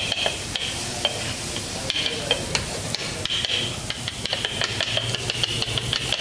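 Kothu parotta being chopped: two metal cutters striking and scraping shredded parotta and egg on a flat metal griddle, making a fast, irregular clatter of metal knocks over a steady scraping.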